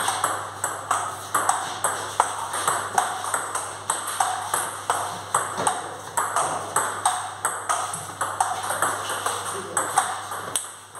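Table tennis rally: the celluloid-type ball clicking off the table and the rubber-faced bats in a fast, unbroken exchange of about two to three hits a second.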